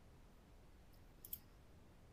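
Near silence: faint room tone with one short, faint click about a second in.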